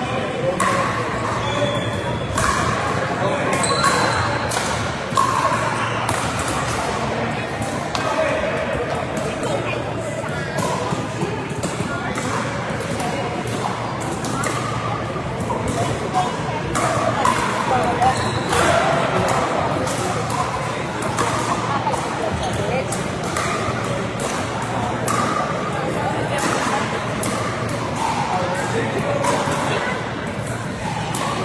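Pickleball paddles hitting the hollow plastic ball: many sharp pops from several courts at once, over an indistinct babble of players' voices, with the reverberation of a large hall.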